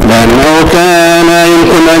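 A man's voice chanting the Gospel reading in Arabic in slow melodic recitation: the pitch glides up in the first half second, then holds one long steady note for the rest.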